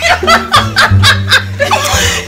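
A young woman laughing hard, several quick pulses of laughter a second, over background music with a steady low bass line.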